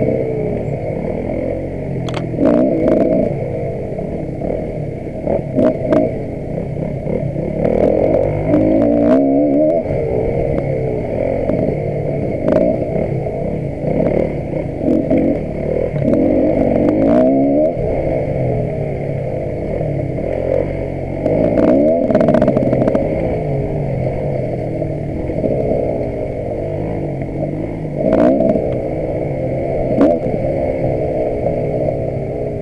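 Enduro dirt bike engine revving up and down over and over as the bike is ridden over rough ground, with scattered knocks and clatter from the bike hitting bumps.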